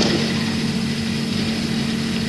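Steady low hum over hiss: the background noise of a low-quality 1970s amateur recording.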